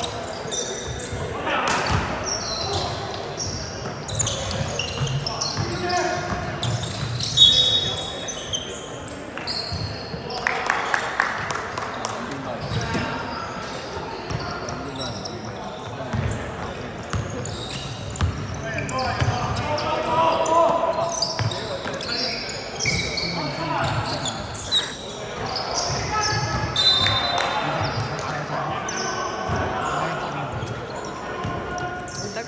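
Basketball being dribbled and bounced on a court, short repeated knocks scattered through the play, with people's voices in the background.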